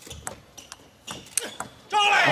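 Table tennis rally: the ball clicking sharply off bats and table in quick alternation, about a dozen hits. A loud crowd roar breaks out right at the end as the point is won.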